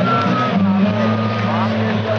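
Loud live band sound from a festival stage's PA, with steady low droning notes, heard from within the crowd amid nearby voices.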